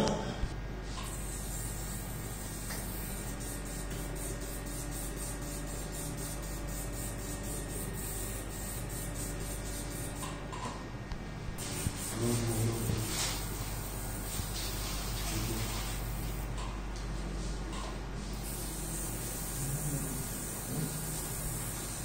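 Steady hiss and low mains hum of operating-theatre equipment, with faint steady tones for several seconds in the first half and a brief murmur of low voices near the middle.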